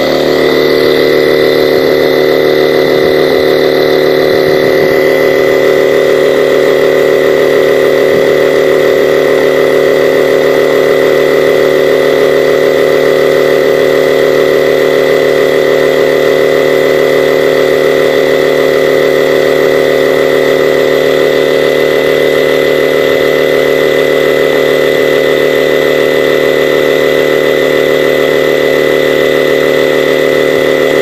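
Sevylor 12V dual-cylinder high-pressure electric air pump running steadily, inflating an inflatable kayak's side tube in its first, high-volume stage. A constant motor hum with a steady high whine over it.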